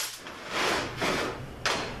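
Transmission parts being handled on a workbench: a sharp knock, a scraping slide about half a second in, then another knock near the end.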